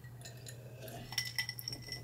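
A person drinking tea from a glass: quiet sips, then light clinks of the glass in the second half as it is handled.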